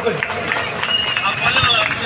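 Murmur of a gathered crowd, with indistinct voices and scattered clicks over a public-address system, between speeches. A thin high steady tone sounds for about a second in the middle.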